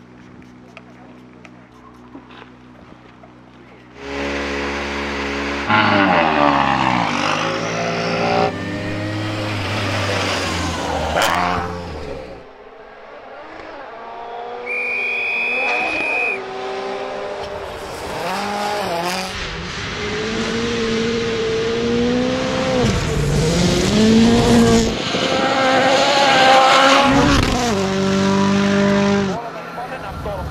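Hyundai i20 N Rally1 Hybrid rally car's engine driven hard on a gravel stage, revving up and falling back through gear changes. It is quieter at first and turns loud about four seconds in.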